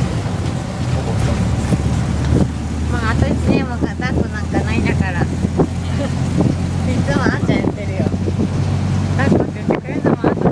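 Tuk-tuk (auto-rickshaw) engine running steadily at road speed, heard from the passenger seat with some wind noise.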